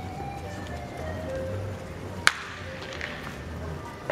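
One sharp crack of a wooden baseball bat hitting a pitched ball a little past halfway, over music playing in the background.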